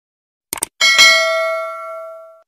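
A quick double mouse click, then a bright notification-bell chime sound effect that rings out with several tones and fades over about a second and a half.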